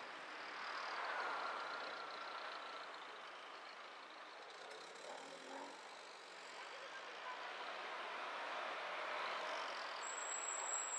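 A car driving through city traffic: steady tyre, road and engine noise, with other vehicles passing close by.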